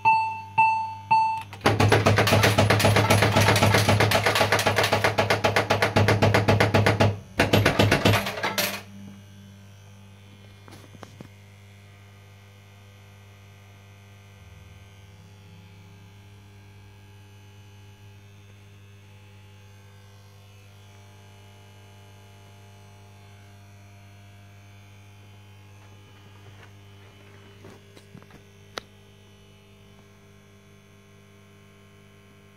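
PCP Blankity Bank fruit machine's electronic sound effects: a few short decaying beeps as the reels stop, then a loud, fast, evenly repeated electronic sound for about five seconds, with a shorter burst just after. After that only the cabinet's steady mains hum is left.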